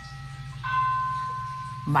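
A bell-like chime, already fading, then a second struck bell tone at a different pitch about two-thirds of a second in, which rings on and slowly fades. A low steady hum lies underneath.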